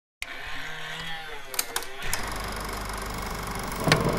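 Vintage film-projector intro effect. A crackly hiss is broken by a few sharp clicks, then from about two seconds in comes a fast, steady mechanical clatter over a low hum, with louder bursts near the end.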